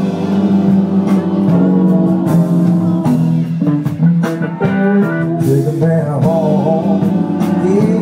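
Live band music with electric guitars over a steady beat and a man's vocal, with wavering, bending vocal lines in the second half.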